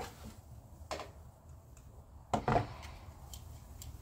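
Two short clicks from a Ruger Max-9 pistol, its trigger pulled slowly through the take-up with a trigger pull gauge in a dry-fire test. The first click comes about a second in; the second, louder one comes a little after two seconds.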